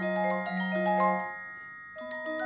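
A quartet of metal-bar mallet keyboard percussion instruments playing a steady run of struck, ringing notes. A little over a second in the playing stops and the last notes ring on and fade out.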